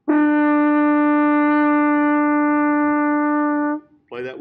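French horn holding one long, steady written A (sounding concert D), fingered with the thumb and first and second valves; it starts cleanly and stops just before four seconds.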